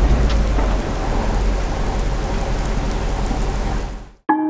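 Heavy rain sound effect: a steady hiss of downpour with a deep thunder rumble at the start, cutting off suddenly at the end.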